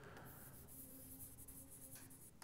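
Faint scratching of a stylus writing on the glass of a touchscreen display board.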